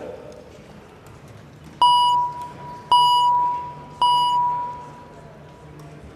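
Three chime strokes about a second apart, each a single clear tone that rings on and fades, signalling the start of the roll call.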